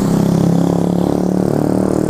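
A road vehicle's engine running close by, a steady pitched hum that wavers only slightly in pitch.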